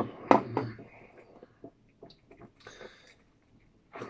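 Eating noises at a table: a few sharp knocks and clicks near the start, then quieter chewing and mouth sounds with a short breath through the nose a little before the end.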